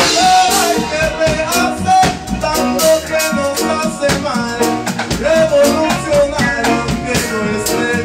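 Reggae band playing live, with a drum kit keeping a steady beat under a bending melodic lead line.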